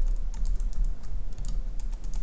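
Computer keyboard typing: a quick, irregular run of keystrokes as code is entered.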